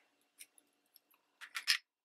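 Small plastic mini ink pad case being opened: a few faint ticks, then a brief cluster of sharper plastic clacks and a scrape about one and a half seconds in as the lid comes off and is set down on the craft mat.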